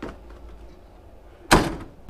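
Cab door of an International 5000 dump truck slammed shut once, a single sharp bang about one and a half seconds in that dies away quickly.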